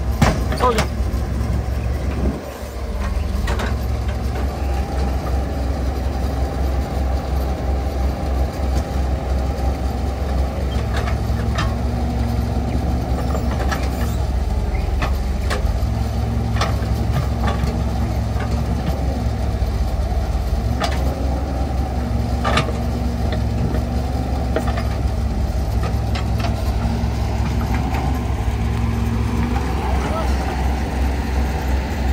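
Caterpillar mini excavator's diesel engine running steadily while its hydraulics dig soil, the engine note changing in stretches of a few seconds as the load comes on and off, with scattered sharp clanks from the bucket and stones.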